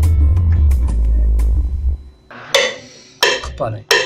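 Synthesizer bass sound playing deep, loud bass notes with sharp percussive clicks over them, stopping about two seconds in.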